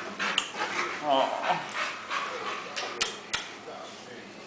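Indistinct voices, with a short high gliding whine about a second in and two sharp clicks near the end.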